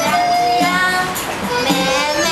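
Chinese bamboo flute (dizi) playing a melody in long, held notes, with a high female voice singing along.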